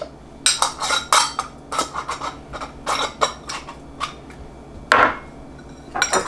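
Small glass jars clinking and knocking against each other and the counter as they are handled and capped. It is an irregular string of sharp clinks, with a louder knock about five seconds in.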